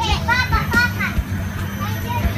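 Young children's high-pitched excited calls and squeals, over a steady low hum.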